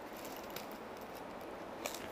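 Faint handling sounds of earrings and their packaging being worked by hand: a few light clicks and rustles, with a slightly sharper click near the end.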